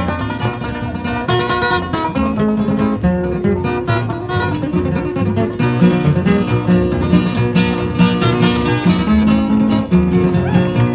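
Live bluegrass band of acoustic guitars, five-string banjo and upright bass playing an instrumental break with no singing: fast picked notes over a steady bass line.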